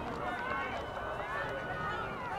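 Several distant voices of soccer players and spectators shouting and calling across the field, overlapping one another, over a steady low rumble.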